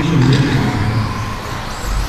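Several 1/10-scale electric 2WD RC buggies with brushless motors running together around the carpet track.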